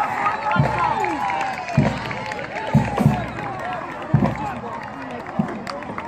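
Crowd of spectators cheering and shouting a touchdown, many voices at once, with a few irregular dull thumps close to the microphone.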